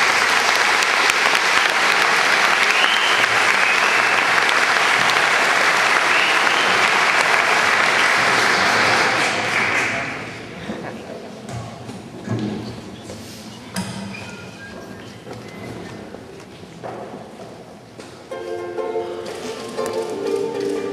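Audience applauding loudly, with a whistle or two, for about ten seconds, then dying away. Quieter stage sounds follow, and near the end a few pitched instrument notes come in.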